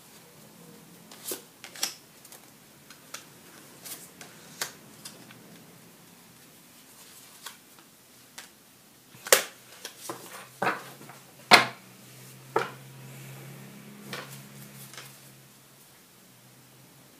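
Tarot cards being handled over a wooden table: the deck is shuffled and cut, and cards are snapped out and laid down, giving irregular sharp taps and slaps, the loudest two a little after 9 seconds and about 11.5 seconds in.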